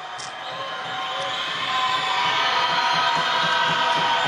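A basketball bounced repeatedly on the court as a player dribbles at the free-throw line before shooting. Hall crowd noise swells steadily louder underneath.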